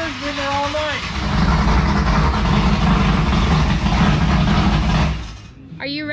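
An engine running at high revs, loud and steady for about four seconds, then dropping away. A voice is heard just before it.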